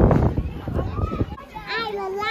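Children playing: loud bursts of buffeting noise for the first second or so, then a young child's high voice calling out in drawn-out tones near the end.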